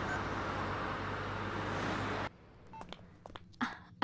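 Steady road and engine noise inside a moving car's cabin, cutting off suddenly a little over two seconds in. A quiet stretch follows with a few faint short clicks and beeps.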